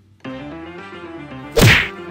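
One loud cartoon whack sound effect about one and a half seconds in, marking two characters colliding head-on and knocking each other flat. Light background music plays under it.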